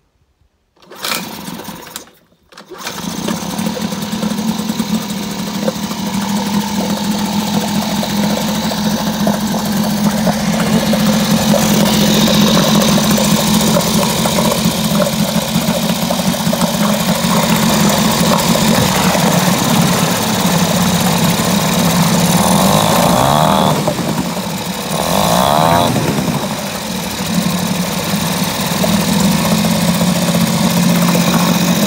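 Freshly rebuilt Mercury 3.3 hp two-stroke outboard pull-started with the choke on: a short burst about a second in, then it catches about two and a half seconds in and runs steadily. It is running at an idle that is too high and needs adjusting, its note dipping and wavering briefly near the end.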